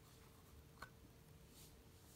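Near silence: room tone with one faint plastic click just under a second in, as the snap-on lid is lifted off a plastic Sea-Monkeys tank.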